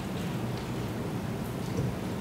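Steady hiss and low rumble of an open microphone channel with no one speaking, cutting in abruptly at the very start.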